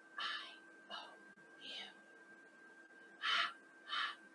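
A woman whispering a chant in short breathy syllables, about five of them, the two near the end loudest.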